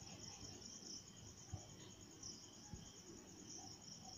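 Near silence but for a faint, steady high-pitched chirring of crickets.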